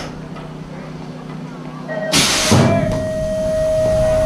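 BMX start gate's pneumatic system venting with a short, loud hiss about halfway through, followed by a steady single-note tone lasting nearly two seconds.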